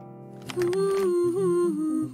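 A voice hums a slow, smooth tune over light background music in an advertising jingle. It starts about half a second in, with long held notes that step gently down in pitch.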